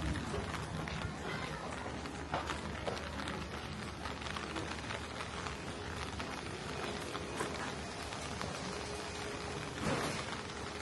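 Light rain falling on a wet street: a steady hiss with scattered small ticks of drops.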